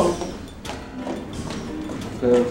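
High-heeled shoes tapping on a wooden floor as a woman walks, a few steps about half a second apart, over soft background music.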